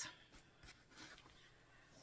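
Faint rustling of pinned fabric quilt blocks being handled, a few soft rustles in near silence.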